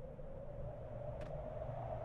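A faint steady hum, one held tone over a low rumble, with a single faint click a little past halfway.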